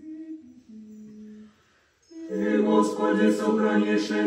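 A lone voice chants a line quietly and stops. After a brief hush about two seconds in, a small mixed choir comes in loudly, singing a cappella in Orthodox liturgical chant: the choir's response in a prokeimenon, tone 5.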